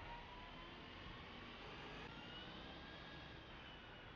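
Faint, steady city street traffic noise from a busy multi-lane road, with a couple of faint whines that drift slightly up in pitch.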